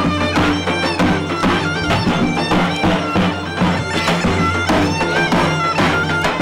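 Bulgarian gaida bagpipe playing a folk tune over its steady drone, with a drum beating time.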